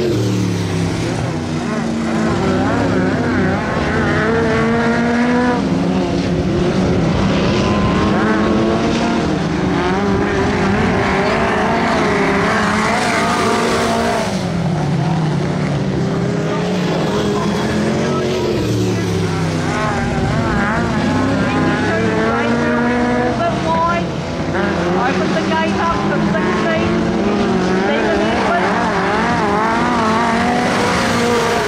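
Two open-wheel speedway race cars lapping a dirt oval. Their engines rise and fall in pitch again and again as they come off the throttle into the turns and pull back onto the straights.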